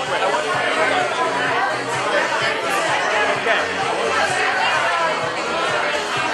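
Many people chattering at once in a crowded room, over background music.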